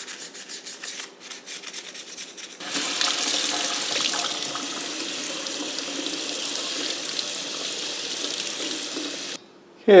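A toothbrush scrubbing foaming degreaser out of an oven door handle's vent in a run of quick strokes. About three seconds in, a kitchen faucet starts running steadily into the sink to rinse the handle, and the water cuts off abruptly near the end.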